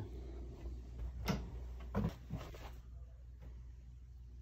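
A few sharp knocks, a little over a second in and again about two seconds in, over a steady low hum.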